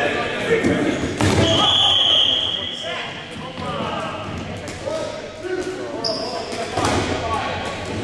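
Rubber dodgeballs thrown and bouncing off the hardwood gym floor, with a few sharp ball impacts, the loudest about a second in and again near the end, echoing in the hall. Players shout and call over the play.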